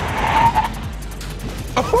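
Car tyres squealing briefly as the Volkswagen Jetta GLI brakes hard to a stop, over background music. Laughter starts near the end.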